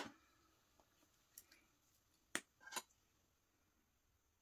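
Near silence: quiet room tone with a few faint small clicks, the clearest a little past two seconds in and a short cluster just after it.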